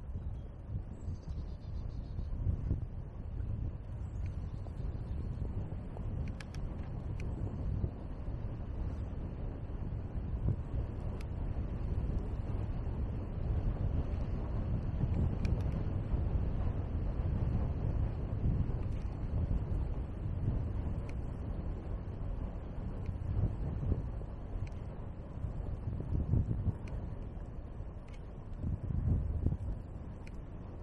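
Wind buffeting a shoulder-mounted camera's microphone while cycling: a low rumble that swells and dips with the riding, over the lighter hiss of bicycle tyres rolling on wet asphalt.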